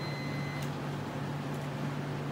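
A steady low mechanical hum, with a faint high whine during the first half-second and a single light click about half a second in.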